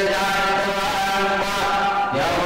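Devotional mantra chanting set to music, sung in long held notes that shift slowly in pitch.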